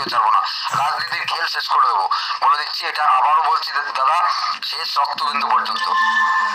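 Speech only: a person talking steadily, the voice thin with little low end.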